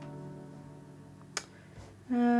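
A sustained chord from the Guitars in Space ambient guitar-swell patch, sampled clean electric guitar, slowly fading away. A single sharp click comes about one and a half seconds in.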